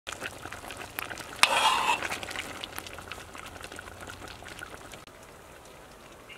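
Food sizzling and crackling in hot oil in a cooking pan, with a louder rush of sizzle for about half a second near a second and a half in, fading toward the end.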